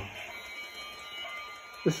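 Faint, steady high tones, several at once, over quiet room tone. A man's voice starts just before the end.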